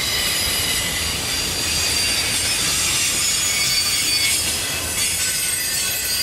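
Enclosed autorack freight cars rolling past with their steel wheels squealing: several shrill high tones break in suddenly and waver in pitch, over the low rumble of the cars on the rails.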